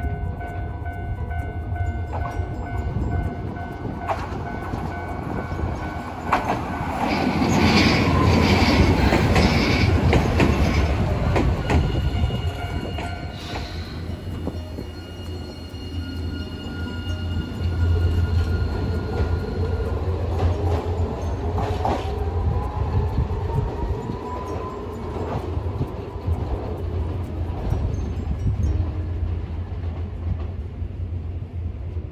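Hiroden 3900-series articulated tram pulling in to a stop. It is loudest a few seconds in as it runs in on the rails and brakes. After standing for a while it pulls away with a traction-motor whine that rises in pitch as it picks up speed.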